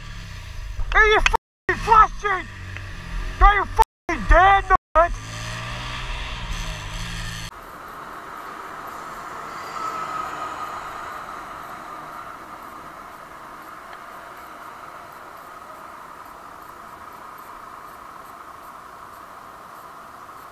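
Shouting over an engine's low rumble for the first seven seconds, then, after a cut, a motorcycle riding in city traffic: steady engine and wind noise that swells slightly about ten seconds in and then slowly eases off.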